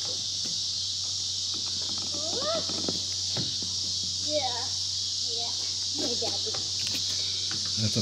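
Steady, high-pitched chorus of insects shrilling without a break, with a low steady hum underneath.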